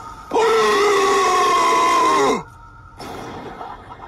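A person's voice holding one long drawn-out cry for about two seconds, steady in pitch and then sliding down as it fades.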